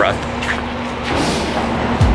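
City street traffic noise: a steady engine hum under a wash of road noise, swelling as a vehicle passes in the second half.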